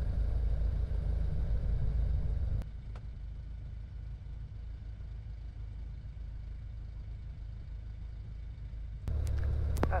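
Low, steady drone of a single-engine light aircraft's piston engine and propeller while taxiing, heard from the cockpit. It drops sharply in level about two and a half seconds in, then comes back louder with a click near the end.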